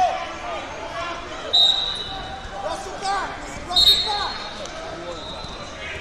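Two referee's whistle blasts, a short one about a second and a half in and a longer one just before the four-second mark, ringing in a large echoing hall over people shouting.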